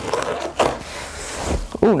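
Packing tape being torn off a cardboard box and the cardboard rasping and scraping as the box is pulled open, in uneven bursts, louder about half a second in.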